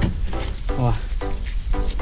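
Garden hose spray nozzle, turned on low, letting a steady hiss of water onto wet clay roof tiles as a sponge scrubs the grime off them.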